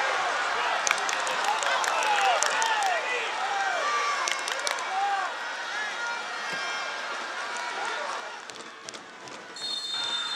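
Footballers shouting calls to each other across the pitch, their voices carrying in a near-empty stadium, with occasional sharp knocks of the ball being kicked. Near the end the referee's whistle sounds a steady blast: the final whistle.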